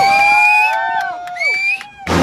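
A few people cheering with long, drawn-out whoops, several voices overlapping, dying away near the end.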